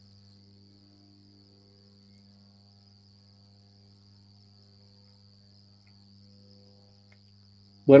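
Faint steady background noise in a pause between speech: a low hum with a thin, continuous high-pitched whine above it.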